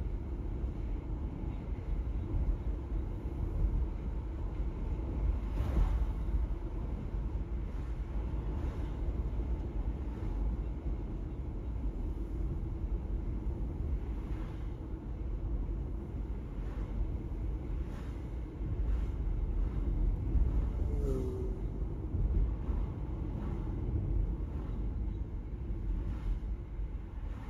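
Steady low road and engine noise inside a moving car's cabin, with a few faint knocks now and then and a brief small squeak late on.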